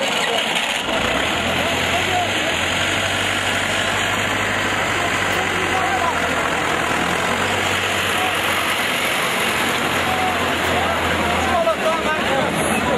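Tractor engine idling with a steady low hum that sets in about a second in and stops just before the end, under the chatter and shouts of a large outdoor crowd.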